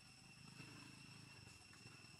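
Near silence: a faint, steady high-pitched tone under a low background rumble.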